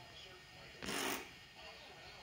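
A brief rustling swish about a second in, lasting about a third of a second, over faint voices in the room.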